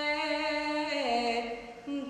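Girl singing a Romanian Orthodox pricesnă (devotional hymn to the Virgin Mary) solo and unaccompanied. She holds a note, slides down to a lower one about a second in, then tails off for a breath near the end.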